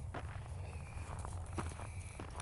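Footsteps crunching on trodden snow at an uneven walking pace, over a steady low rumble.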